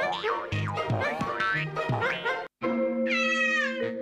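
Cartoon score full of sliding, springy sound effects, which drops out for a moment halfway through. Then a held low chord sounds under a long, falling meow from a cat.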